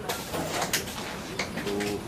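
A dove cooing: a low, steady note near the end.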